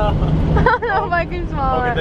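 Voices and laughter inside a moving vehicle's cabin, over a low steady engine and road rumble; the hum drops away abruptly about two-thirds of a second in.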